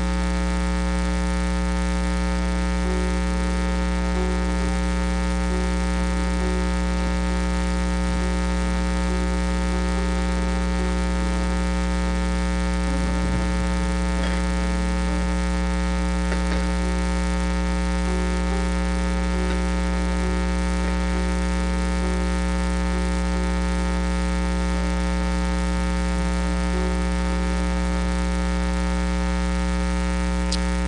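Loud, steady electrical mains hum and buzz in the sound system, a low drone with a stack of overtones that does not change.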